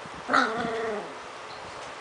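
A 3½-week-old puppy giving one short cry, sharp at its start and dropping in pitch as it ends, about two-thirds of a second long.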